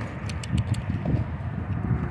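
Footsteps on an asphalt street: irregular scuffs and taps of people walking, over a low outdoor rumble.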